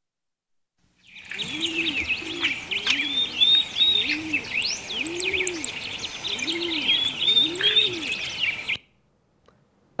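Birdsong: many small birds chirping and twittering, with a dove cooing underneath in a low call repeated about once a second. It starts about a second in and cuts off suddenly shortly before the end.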